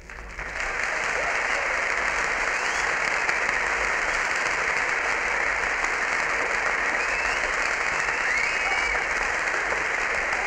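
Audience applauding steadily in a concert hall, starting about half a second in, after the band's previous number has ended.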